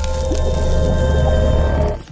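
Intro music sting with sound effects: a deep bass rumble and held tones under a noisy swell, cutting off abruptly at the end.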